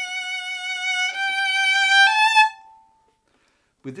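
Solo violin playing sustained notes with a combined wrist and finger vibrato: three held notes, each a step higher than the last. The bowing stops about two and a half seconds in.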